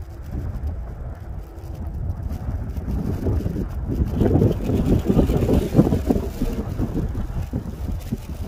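Low, irregular rumble of wind buffeting the microphone, swelling louder about halfway through.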